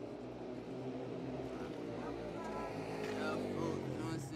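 A car engine idling steadily, with voices talking in the second half.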